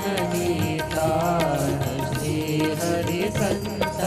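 Indian devotional bhajan music: tabla drums, harmonium and a bamboo flute playing an instrumental passage between sung lines, with held and gliding melody notes.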